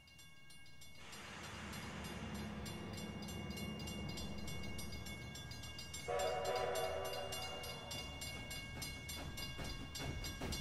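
Steam train sound effect: a rumbling train noise swells up from about a second in, and about six seconds in a steam whistle blows a single blast of about two seconds over it.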